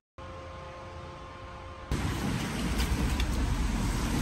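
A steady hum with two tones, then, about two seconds in, a sudden change to louder street noise: road traffic with wind buffeting the microphone.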